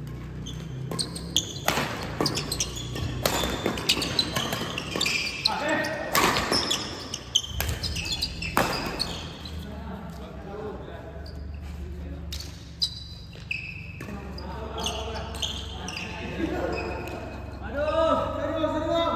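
A fast badminton rally: sharp hits of rackets on the shuttlecock in quick succession, with players' footwork on the court and some voices, echoing in a large sports hall.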